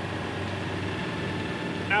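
Triking three-wheeler's Italian 1000 cc Moto Guzzi V-twin running steadily, a low, even drone with no change in pitch.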